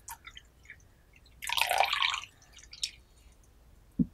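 Tea being poured into a porcelain teacup: a few small drips, then a short splashing pour about one and a half seconds in that lasts under a second, a small tap a little later, and a dull knock at the very end.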